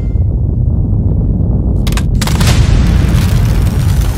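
Avalanche sound effects: a deep low rumble, then sharp cracks about two seconds in, followed by a dense rush of noise as the snow breaks loose and slides.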